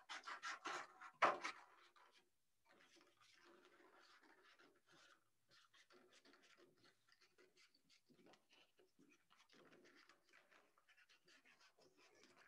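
Scissors cutting paper: a quick run of snips in the first second and a half, the loudest about a second in, then only faint paper handling, near silence.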